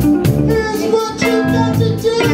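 Live soul and R&B band playing: a man singing lead into a microphone over electric guitar, bass and drums, with a steady drum beat.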